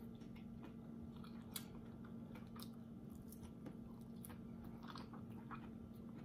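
A person chewing a mouthful of cooked yellow beans, heard as faint, irregular wet mouth clicks.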